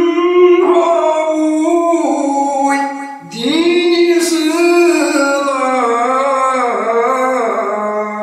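A solo male voice singing a Kashmiri Sufi manqabat, holding long, wavering notes. One phrase ends about three seconds in, and after a brief breath the next begins.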